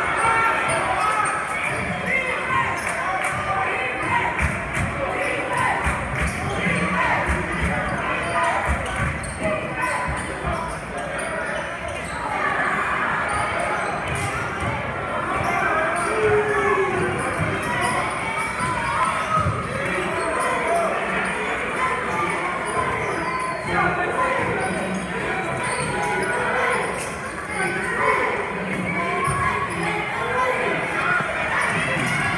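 Basketball dribbled on a hardwood gym floor during live play, a string of bounces echoing in the hall over steady talk and shouts from spectators and players.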